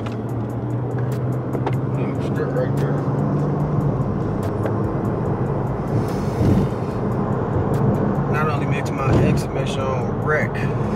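Road and engine noise heard inside a moving car's cabin, with a steady low drone through the first four seconds or so. A voice or vocals come in briefly near the end.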